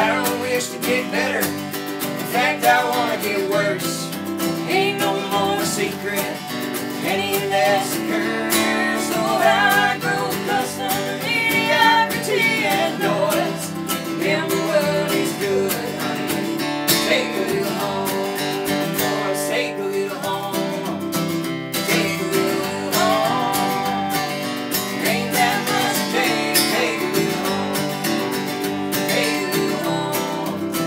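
Folk song played on a strummed acoustic guitar and a mandolin, with a voice singing at times over the instruments.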